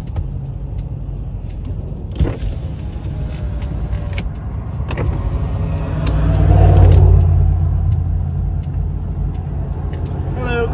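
Low, steady rumble of a stopped car heard from inside the cabin, swelling for a couple of seconds past the middle, with a few sharp clicks.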